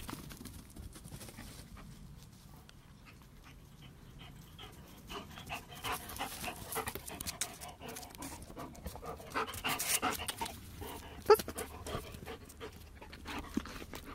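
A large dog panting close by in quick, irregular breaths, heavier through the second half, with one sharp knock a little after the middle.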